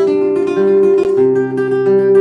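Nylon-string classical guitar played fingerstyle: a high note keeps sounding over a bass line that moves every half second or so.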